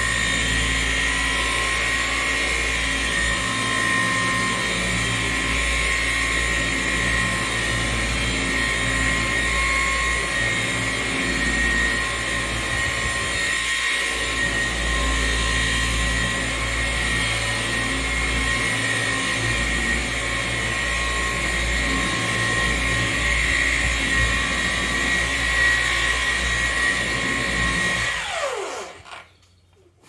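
Dual-action orbital polisher with a foam pad running on car paint, a steady high whine as it works in an abrasive paint conditioner. About two seconds before the end the motor is switched off and spins down with a falling whine.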